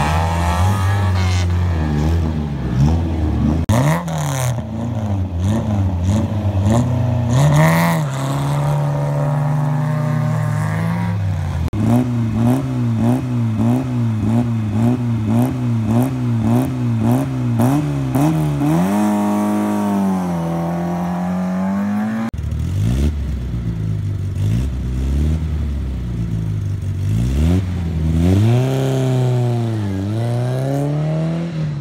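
Historic rally car engines revving at a stage start: one car leaves early on, then the next car holds its engine on the line with the revs bouncing up and down about three times a second, revs up and launches away about 22 seconds in, accelerating through the gears, and another engine revs near the end.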